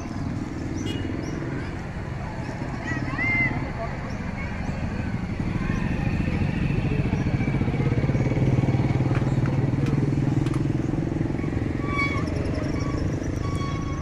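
Road traffic: a motor vehicle engine rumbles steadily, getting louder about six seconds in and easing off near the end.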